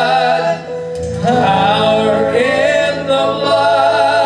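A slow gospel hymn sung by a man into a microphone, with acoustic guitar and keyboard accompaniment. The notes are held long, with a brief breath between phrases about a second in.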